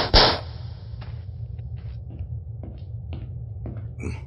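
A loud, sharp gunshot just after the start, ringing on for about a second, the second of two shots close together. Then a few faint scattered taps over a low steady rumble.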